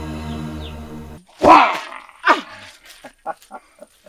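Background music that stops abruptly about a second in, followed by a loud, short startled cry that falls in pitch, a second shorter cry, and then a few short bursts of laughter.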